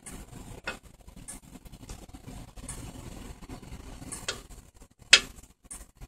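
Gas stove burner flame running with a low steady rumble, with scattered light metallic ticks from steel tongs resting on the burner cap and one sharper click about five seconds in.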